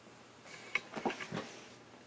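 A soft rustle of paper being handled on a table, with three light clicks or taps about a third of a second apart.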